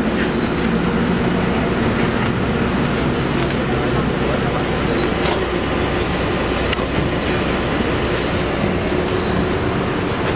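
A bus's diesel engine running steadily at idle, heard close by at the open luggage hold, with a few light knocks as suitcases are pushed into the hold.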